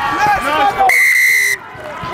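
Players shouting, then a referee's whistle blown once about a second in: a single steady, shrill blast of just over half a second, signalling a try.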